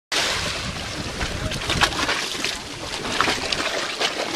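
Seawater rushing and splashing as it surges through a narrow rock channel, with wind buffeting the microphone.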